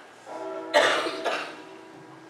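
A person coughing: a loud, sudden cough about three-quarters of a second in and a weaker one shortly after, over steady held tones.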